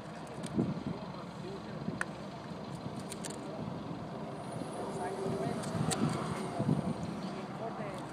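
Steady outdoor background noise with a vehicle passing, and a couple of light single clicks from a metal spoon against a metal sample cup as soil is added on a digital scale.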